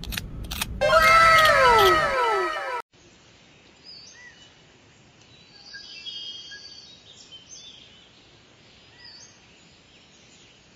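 A few sharp scraping clicks, then a loud run of overlapping calls, each falling in pitch, that cuts off suddenly about three seconds in. After it, faint outdoor ambience with occasional short bird chirps.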